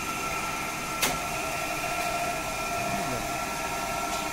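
Three-phase induction motor running on a star-delta starter, a steady electric hum and whine. One sharp click comes about a second in.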